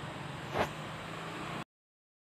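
Steady hiss with a low hum from the gas burner under a simmering pot, broken about half a second in by one brief sound of a spoon pushing shrimp into the broth. The sound then cuts off suddenly to dead silence near the end.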